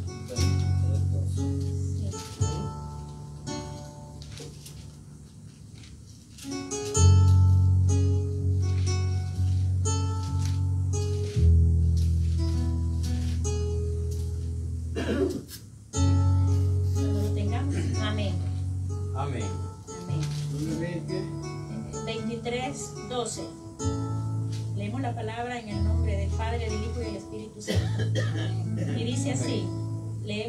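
Electronic keyboard playing slow, held chords in a guitar-like plucked voice over a deep bass note. Each chord is struck and left to fade, with a new one every two to four seconds.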